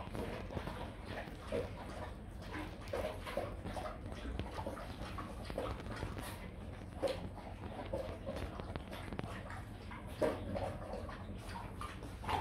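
Rottweilers eating soaked dry dog food from stainless steel bowls: irregular chewing, licking and lapping, with scattered sharper knocks and clicks against the bowls.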